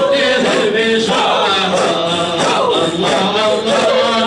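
A group of men chanting together in a Sufi hadra, unaccompanied: several male voices singing a gliding, melismatic line over one another without a break.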